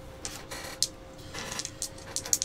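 A few faint clicks and rattles as a pair of dice are picked up and handled in the hand, over a faint steady hum.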